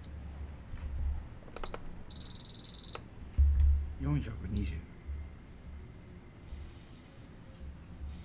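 Electronic beeps from a temperature-controlled soldering station: a short beep, then a long slightly pulsing beep of about a second, then another short beep, as the iron's set temperature is stepped up to 420 degrees. A dull bump sounds just after the long beep, and a low hum runs underneath.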